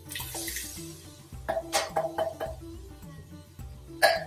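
Background music with a steady beat over tinned tomatoes being poured from a can into an aluminium pressure cooker: a wet pour in the first second, then several knocks of the tin on the pot about halfway through.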